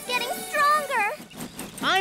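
A cartoon character's voice making short, high-pitched wordless vocal sounds for about the first second, then a brief pause before speech starts again near the end.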